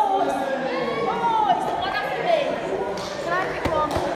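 Indistinct voices of people talking in a large, echoing room, with one sharp knock near the end.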